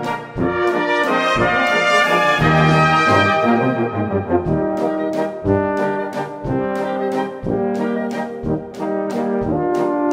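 A brass band playing a waltz: sustained brass melody with trombone over a bass note about once a second and lighter after-beats between.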